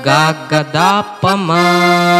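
A man singing a slow melodic line in Natabhairavi raga (the C minor scale), with gliding, ornamented notes, then one long held note from about halfway. An electronic keyboard plays the melody with him.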